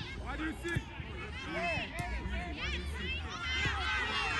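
Overlapping high-pitched shouts and calls from children and onlookers on a soccer field, with no single clear speaker. A sharp knock comes about two seconds in.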